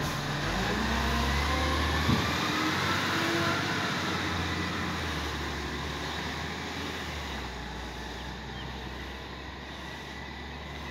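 Garbage truck's diesel engine pulling away, its pitch climbing as it accelerates and then fading as the truck recedes down the street. A single sharp knock about two seconds in.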